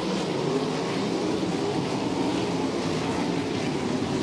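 A field of USAC wingless sprint cars running hard on a dirt oval, their V8 engines blending into a steady, wavering drone as the race restarts under green.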